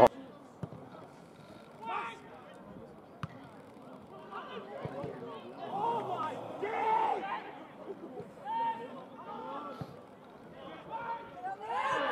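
Shouts and chatter of players and spectators carrying across an outdoor football pitch, loudest about halfway through, with a few sharp knocks of the ball being kicked.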